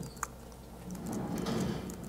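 A quiet pause through the talk's microphone: faint room tone, with a short click about a quarter second in and a faint low sound in the second half.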